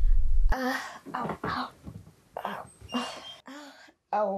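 A young woman moaning in fake pain, about five short wavering moans with pauses between them. They follow a low rumble that cuts off suddenly about half a second in.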